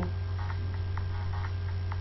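Steady electrical mains hum on the recording, with faint clicks scattered through it.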